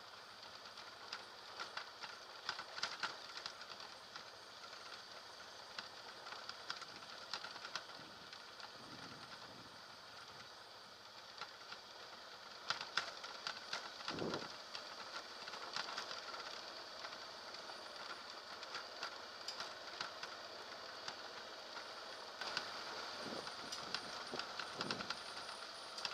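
Ride noise from a motorcycle on a rough dirt road, heard through a bike-mounted camera: a steady hiss with frequent small clicks and knocks from bumps. A heavier thump comes about fourteen seconds in.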